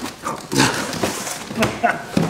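Cardboard packaging of an RC car kit box being handled and pulled open: scraping and rustling with several short knocks, amid low voices.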